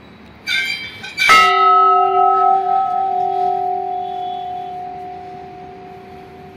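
Large hanging temple bell rung by its rope: a lighter clang about half a second in, then a full strike just over a second in that rings on with a few steady tones, slowly fading.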